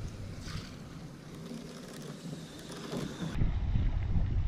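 Wind buffeting a camera microphone aboard a boat at sea, over the wash of water. It grows louder and deeper about three seconds in.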